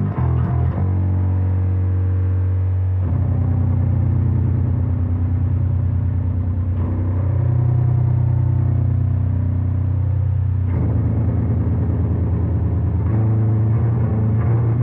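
Schecter Omen 5 five-string electric bass played solo through a Fender Bassman 60 amp: a slow passage of long held low notes that change only every three or four seconds.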